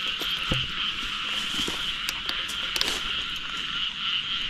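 A dense chorus of frogs calling steadily at night, with a few short clicks scattered through it.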